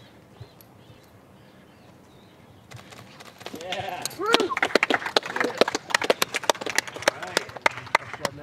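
A few people clapping, with some shouts and cheers, starting about three seconds in after a quiet stretch.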